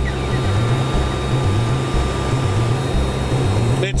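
Landing-gear warning alarm of a Duo two-seat glider sounding steadily over the rush of air in the cockpit during a fast descent. It sounds because the wheel is still retracted.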